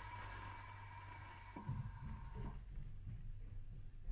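Land Rover Defender air suspension lowering to its extra-low height: a faint steady whine with a faint hiss that stop about two and a half seconds in, over a low hum.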